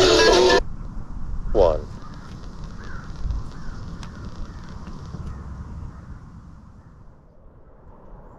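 Guitar music from the Qodosen DX-286 portable radio's speaker, tuned to an FM station, stops abruptly about half a second in as the radio is switched off. A single harsh bird call follows, then quiet outdoor air with a few faint chirps.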